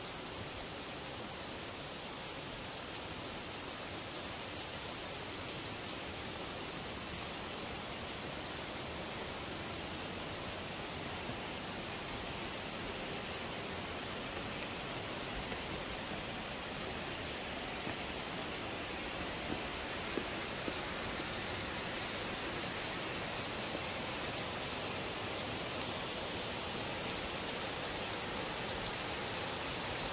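Steady rushing of falling water from Wentworth Falls, slowly getting louder as the falls are approached, with a few small clicks.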